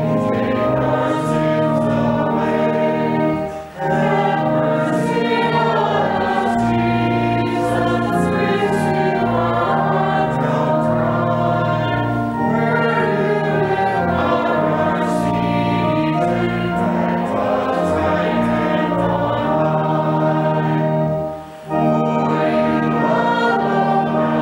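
Congregation singing a hymn to organ accompaniment, in sustained phrases with short breaks between lines about four seconds in and again near the end.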